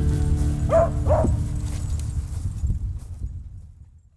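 A dog barks twice in quick succession about a second in, over background music that fades out near the end.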